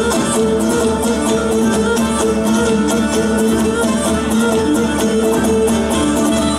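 Live instrumental Cretan sousta dance music: a bowed Cretan lyra plays the melody over strummed laouto lutes, with a steady quick beat and no singing.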